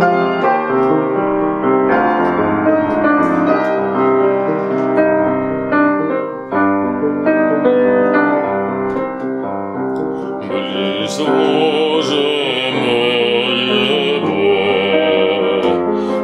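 Art song for voice and piano. A piano plays flowing broken-chord accompaniment alone, and about ten seconds in a classically trained singer enters over it with a sustained, vibrato-rich line.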